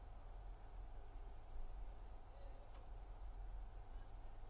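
Faint background noise of the recording: a steady low hum with a light hiss and thin high-pitched steady tones, and one faint click about two-thirds of the way through.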